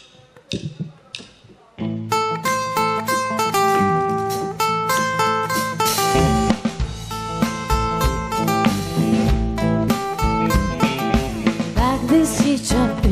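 A live country-rock band starting a song: a drummer's stick clicks count it in, then strummed acoustic guitar and an electric guitar melody begin about two seconds in, with drum kit and bass joining about six seconds in.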